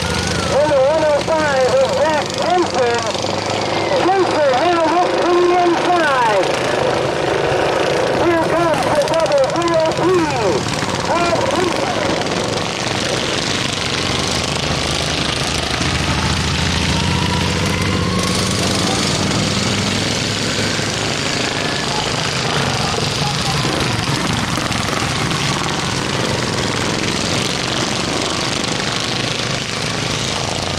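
Racing lawn mower engines in the governed class running hard around a dirt oval, a steady drone whose pitch wavers and glides as the mowers pass. The pitch wavers quickly for the first dozen seconds, then settles into a steadier drone with slow rises and falls.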